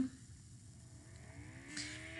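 Quiet room tone: faint steady low background hum, with no distinct event.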